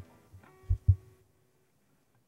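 Two dull, low thumps close together, a little under a second in, picked up by a microphone, with a softer knock at the very start and a faint held tone behind them.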